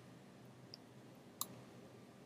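Near silence: room tone with one short, sharp click about one and a half seconds in.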